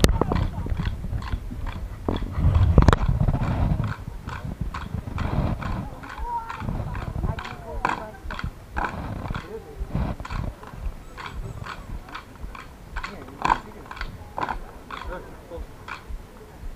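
A steady rhythm of sharp knocks, about two or three a second, keeping time for a folk dance. Loud voices in the first few seconds.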